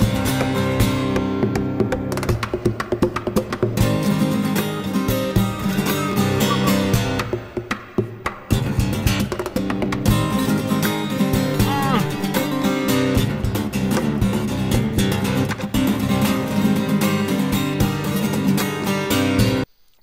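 Solo acoustic guitar played fingerstyle, with very quick runs mixed with sharp percussive hits on the strings and body. The playing cuts off abruptly near the end.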